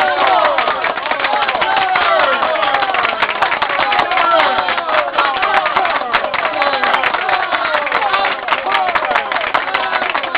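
Theatre audience applauding: dense, irregular clapping with many voices calling out and cheering over it.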